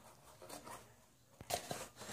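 Mostly quiet, with a few faint rustles, then about a second and a half in a click and brief rubbing as a hand takes hold of a foam cup on a table.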